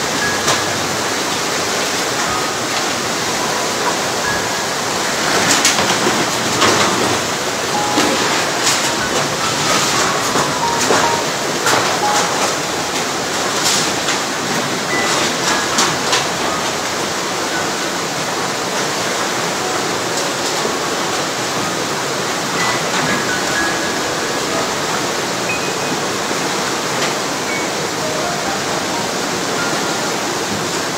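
Muddy floodwater of a river in spate rushing past in a loud, steady rush, with a run of knocks and bangs from about five to sixteen seconds in as cars and debris are swept along in the current.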